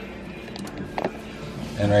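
Feeler gauge blade being slid between a 2JZ camshaft lobe and its valve bucket to check valve lash: a few faint metal clicks and scrapes, the clearest about a second in. The 0.010-inch blade just clears.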